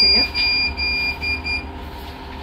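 Electronic beeper sounding a high steady tone in a run of several short beeps over about a second and a half, then stopping.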